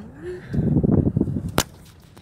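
Loud rustling and scraping as the phone's microphone rubs against hair and clothing while the phone is moved about, lasting about a second, then a single sharp click.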